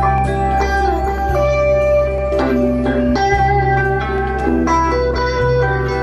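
Band music: an electric guitar plays a melodic lead of held, slightly bending notes over a steady bass line and keyboards, with light regular beats.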